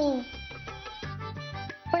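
Background music from a TV drama score: held tones over a low bass drone with a few faint ticks. It follows the tail of a drawn-out spoken 'ho' at the very start and dips briefly near the end.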